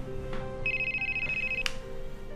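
LG mobile phone ringing: a steady high electronic ring tone lasting about a second, cut off with a click, over soft background music.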